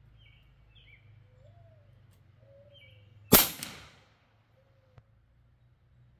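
A single shot from a Western Rattler .357 PCP air rifle with a shrouded barrel, firing an FX Hybrid slug: one loud, sharp crack about three seconds in, dying away within half a second.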